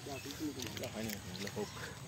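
Quiet talking: a person's voice speaking softly, much lower than the conversation around it.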